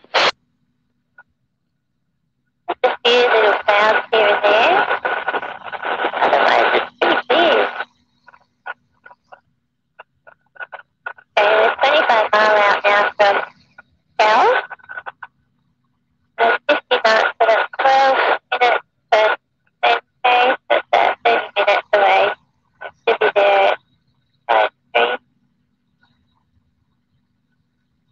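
Aircraft radio transmissions heard through the intercom: garbled voices in loud bursts that cut in and out abruptly, with a steady whistle tone under them and dead silence between calls.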